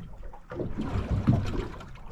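Water lapping and gurgling against the hull of a small anchored boat, swelling and easing irregularly, loudest just past the middle.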